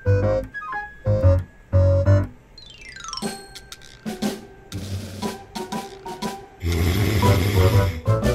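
Playful background music: short keyboard-like notes over a beat, a sliding pitch effect about three seconds in, and a dense rattling percussion passage near the end.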